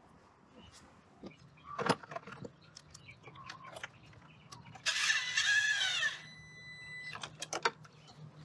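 Cordless drill-driver with a socket extension running for about a second, its motor whine wavering in pitch as it drives a bolt down, with scattered handling clicks and a knock before it and a few clicks after.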